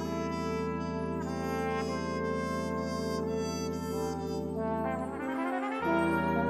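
Brass quintet and concert wind band playing: a trumpet melody over held low brass chords. About five seconds in the low chords drop out briefly, then the band comes back in louder just before the end.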